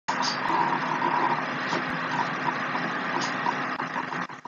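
Steady rushing background noise picked up by a laptop microphone as a screen recording begins, with two faint clicks about half a second and two seconds in.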